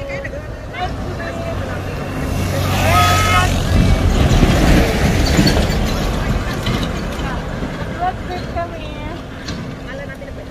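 A box truck driving past on the road: engine hum and tyre noise swell, are loudest about four to five seconds in, then fade as it moves away.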